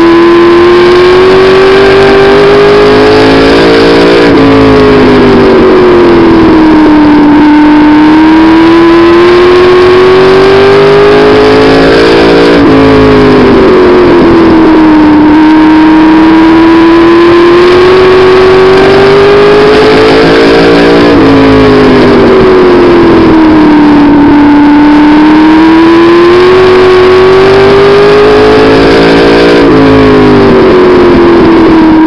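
Race car engine heard from a camera on board the car while it laps an oval. The revs climb steadily along each straight, drop off sharply as the driver lifts for the turn, and build again coming out of it, about every eight and a half seconds.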